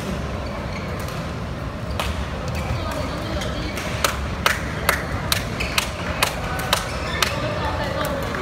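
Sports-hall murmur of voices, then a run of sharp, echoing clicks from about four seconds in, two or three a second, typical of badminton rackets striking shuttlecocks.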